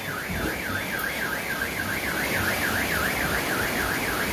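Car alarm sounding, one tone warbling rapidly up and down about four to five times a second without a break, over the steady rush of floodwater.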